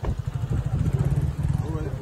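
A motorcycle engine running with a fast, steady low beat, with voices of a crowd faintly behind it.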